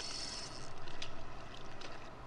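Water lapping and splashing around an inflatable kayak, with a brief high hiss near the start and a few light clicks.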